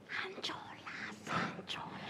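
Faint whispered speech, breathy and almost without voice.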